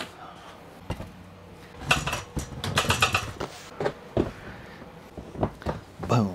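Knocks and clatter of things being moved and set down on a wooden floor, with two short bursts of rattling about two and three seconds in.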